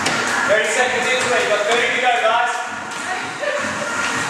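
Indistinct voices talking in a large, echoing gym hall.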